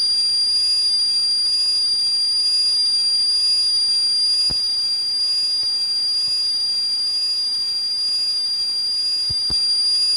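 Steady high test tone from a 16mm optical soundtrack sound focus test, one pitch held unbroken. There is a faint click about four and a half seconds in and a couple more near the end. Between these clicks the tone is a little quieter, during the stretch recorded in reversed emulsion position.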